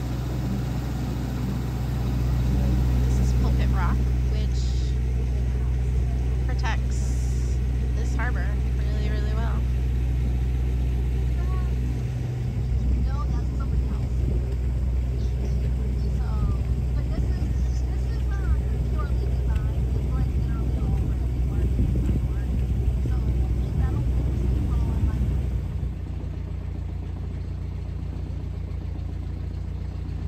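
Sailboat's engine running with a steady low drone. The drone shifts about twelve seconds in and drops quieter a few seconds before the end.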